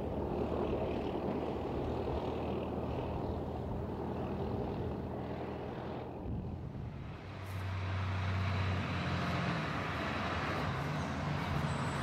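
Heavy vehicle engine running with a steady low rumble. It fades briefly around six to seven seconds in, then a deeper engine hum comes in.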